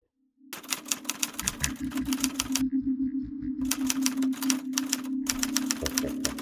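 Typing sound effect: three runs of rapid key clacks as on-screen text is typed out letter by letter, over a steady low hum.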